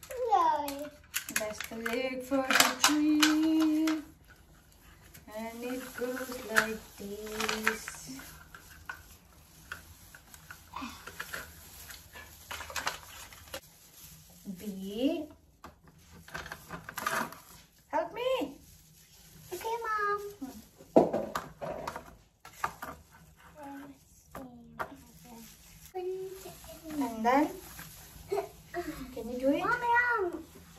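A young child talking and vocalising in short, high-pitched phrases, with scattered clicks and rustling as artificial Christmas tree parts are handled.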